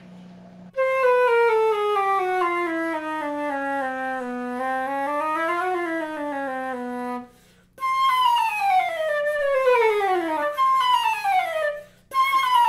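Concert flute playing a stepwise scale descending into the low register, rising and falling briefly, then stopping. After a short break come several quicker runs, each sweeping down from high to low. The flute is playing cleanly with no leaking keys, sounding better than it had been.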